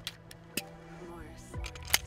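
Background music, with light clicks of gun handling and a sharp click near the end as the CZ P-10 C pistol's magazine is released and pops out.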